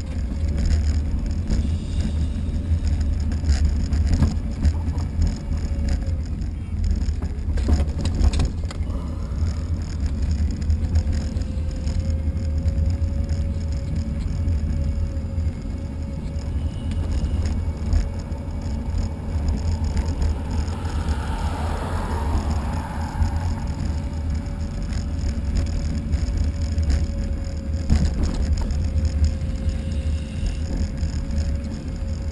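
Wind rumbling on the microphone of a camera moving along a road, with a thin steady whine through most of it. A few knocks come around eight seconds in and near the end, and a brief swell of noise rises and fades a little past twenty seconds in.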